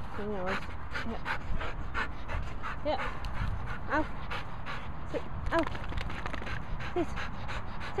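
Two dogs, a black Labrador and a Hungarian Vizsla, play-fighting: rapid panting with a few short whines.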